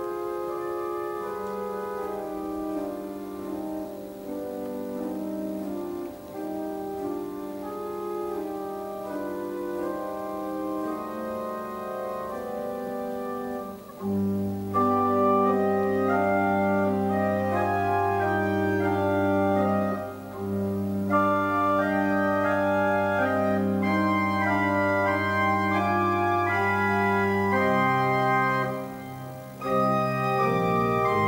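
Organ playing slow, sustained chords as communion music. About halfway through, a deep bass line comes in and the music grows louder and fuller, with brief pauses between phrases.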